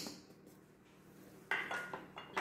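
A metal spoon clinks against a stainless steel mixing bowl about a second and a half in, with a brief ring.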